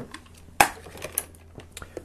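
A few knocks and clicks of objects being moved on a desk. One sharper knock comes about half a second in, followed by lighter taps.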